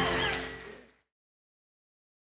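A live showband with singers holding a sustained closing chord, which fades away and ends about a second in, leaving silence.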